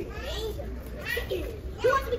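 A child talking in short, high-pitched phrases over a low, steady background hum.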